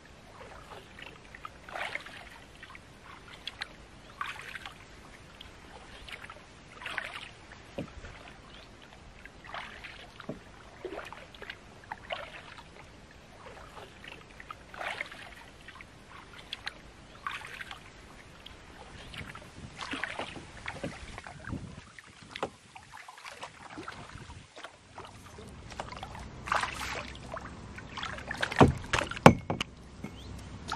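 Canoe paddle strokes in calm river water, a soft splash and drip every second or two. A few louder knocks come near the end.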